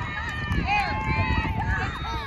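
Several high voices shouting at once from players and spectators at a girls' soccer match, with long rising-and-falling calls, over a steady low rumble from the outdoor microphone.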